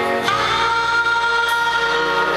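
Live rock band playing: a singer holds one long note, starting just after the beginning, over electric guitar.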